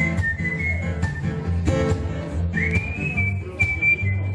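A whistled melody over a strummed acoustic guitar: a high, pure line that slides up into its notes, with the guitar's steady strums and bass notes underneath.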